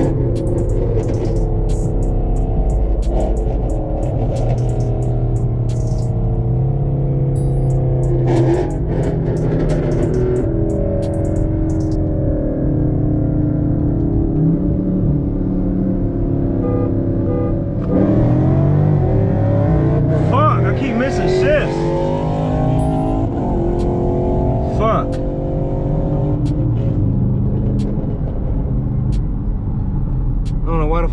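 Dodge Scat Pack's 6.4-litre HEMI V8 heard from inside the cabin while driving at steady cruise. About eighteen seconds in it gets louder and its pitch sweeps up and down for a few seconds as the car is driven harder.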